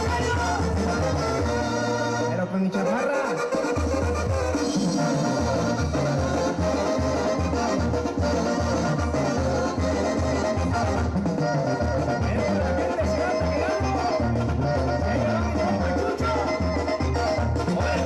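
Mexican brass band music with a steady bass beat, played over a PA system. The bass drops out briefly a couple of seconds in, then comes back.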